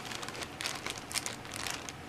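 Clear plastic zip-top bag crinkling, a run of light irregular crackles as it is handled and opened to get at the fragrance sample vials inside.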